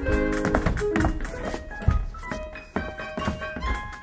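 Live piano and violin music, with occasional thuds, a sharp one about two seconds in.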